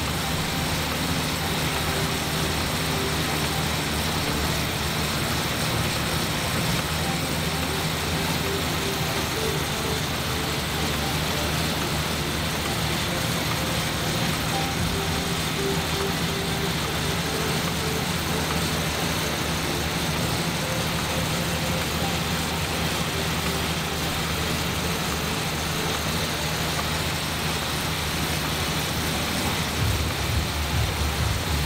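Assault AirBike's fan whooshing steadily as it is pedalled hard.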